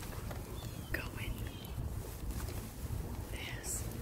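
Thin plastic trash bags rustling and crinkling as a hand rummages through them, over a steady low background rumble.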